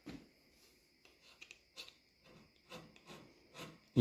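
Hand scraper taking short, faint strokes across the iron face of a lathe compound slide, about two scrapes a second. It is knocking down the high spots marked by bluing, to flatten a slide that rocks on the surface plate.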